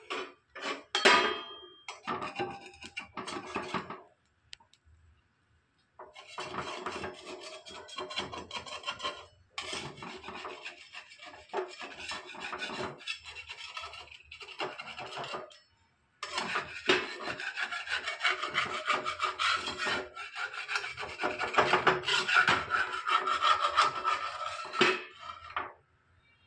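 Flat spatula scraping repeatedly against a clay tawa, working under a dosa to loosen it from the pan: a rasping scrape in long stretches, broken by short pauses. A few short knocks come in the first few seconds.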